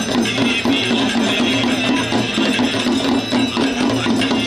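Devotional Ganga Aarti music with rhythmic percussion and ringing bells, among them the priest's brass hand bell, going on steadily without a break.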